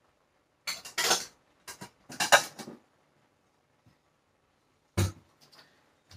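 Dishes clattering as a bowl is fetched: three short bursts of clinks and clacks in the first three seconds, then a single sharper knock with a low thud about five seconds in.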